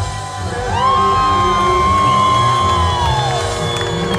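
Live reggae band music with a cheering crowd. A long high note glides up about a second in, holds, and falls away near the end.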